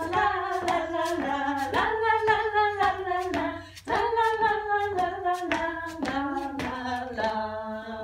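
Two women singing the 'tralala' refrain of a Dutch children's song without accompaniment, with rhythmic hand claps along with the beat.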